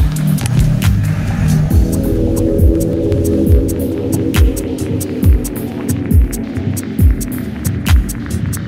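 Electronic dance music from a continuous DJ mix: a deep, sustained bass drone, with a held synth chord coming in about two seconds in, a kick drum a little under once a second and light hi-hat ticks above it.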